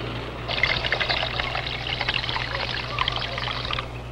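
Water pouring steadily into a flower vase, starting about half a second in and cutting off shortly before the end, over a steady low hum.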